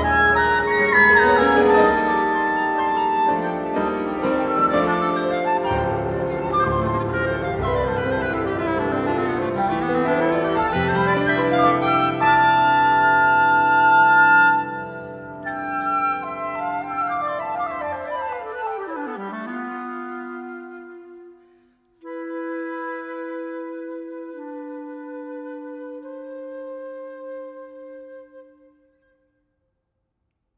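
Chamber trio of flute, clarinet and piano playing contemporary classical music. The full ensemble texture thins out after a falling run about two-thirds of the way through. After a brief break, a few long held notes fade away, and the music stops shortly before the end.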